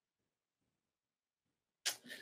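Near silence on a video call, broken near the end by one short, sharp click with a faint hiss after it.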